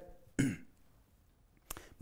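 A man clears his throat once, a short rough burst about half a second in. A faint click follows near the end.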